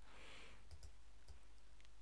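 A few faint clicks of a computer mouse as text is clicked and selected, spread over two seconds against quiet room tone.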